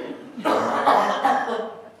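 Audience laughing for just over a second, a loud burst that starts about half a second in and fades away.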